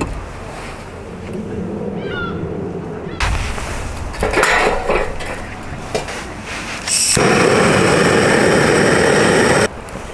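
Split firewood pieces knocking and clattering as they are stacked and laid into a metal fire grill. Near the end comes a loud, steady rushing hiss for about two and a half seconds that cuts off suddenly.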